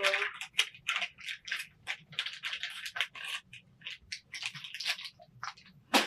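Rustling and rubbing of a makeup wipe in quick, irregular strokes as lip tint is wiped off the lips.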